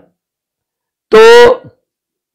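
A man's voice saying a single drawn-out word, "to" ("so"), about a second in, with silence around it.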